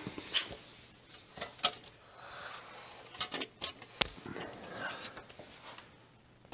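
Scattered knocks, clicks and scrapes of a steel forming die being slid and shifted by hand on a rubber pad press's steel bolster, with a sharp knock about one and a half seconds in.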